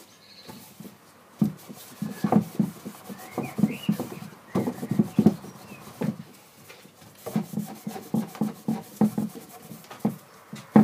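A cloth rubbed and dabbed over carved, charred wooden panels, in quick, uneven strokes that start about a second and a half in and carry on.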